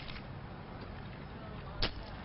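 A sheet of paper is lifted and snapped open, giving one short, sharp crackle near the end over a faint steady hiss.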